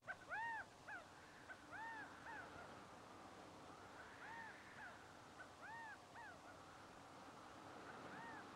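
Faint birdsong over a steady hiss: short, clear calls, each rising and falling in pitch, repeated about once a second. The sound cuts in suddenly out of silence at the very start.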